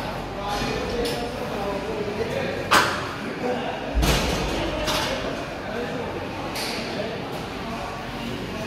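Plate-loaded leg press machine clanking as the weighted sled moves, with a few sharp metal clanks. The loudest comes about three seconds in, and a heavier thud follows a second later.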